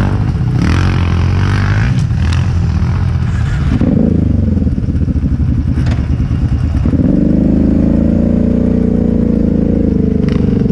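Off-road vehicle engines running at low speed on a sand trail. The nearest engine's pitch shifts about four seconds in and settles into a steady, higher note at about seven seconds.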